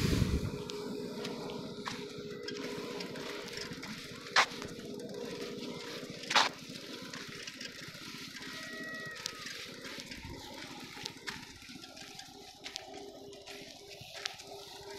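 Open-air ambience with a steady low hum, like a distant motor, under a faint noisy wash. Two sharp clicks about four and six seconds in, and a brief high tone near the middle.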